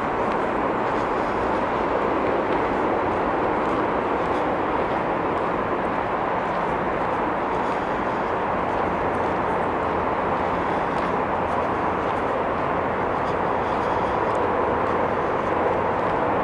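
Steady, even rushing noise of distant motor traffic, unchanging in level, with faint irregular footsteps on the trail.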